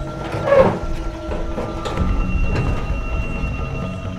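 A corrugated sheet-metal gate rattling and creaking as a man climbs over it, loudest about half a second in, over steady held background-music tones.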